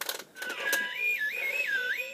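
A click as the button on a North Pole Communicator toy is pressed, then the toy's electronic tune of pure, whistle-like tones stepping up and down, opening the call to the North Pole.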